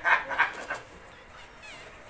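Gift-wrapping paper tearing and crackling as a box is unwrapped, loudest in the first second. Near the end comes a brief high, wavering whine.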